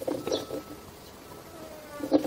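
Faint buzzing of a flying insect over low background hiss.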